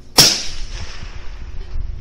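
A single rifle shot about a fifth of a second in: a sharp report followed by a fading echo lasting over a second.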